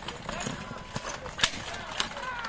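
Hoofbeats of a pair of racing bullocks galloping past while pulling a two-wheeled cart, with spectators shouting, and one sharp crack about one and a half seconds in.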